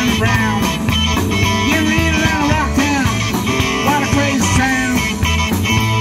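Live rock and roll band playing: electric guitar, bass guitar and drums keeping a steady driving beat.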